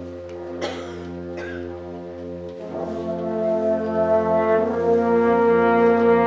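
Concert band playing held chords led by low brass, swelling louder about halfway through.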